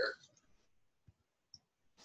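Two faint, short computer mouse clicks about half a second apart, amid near silence.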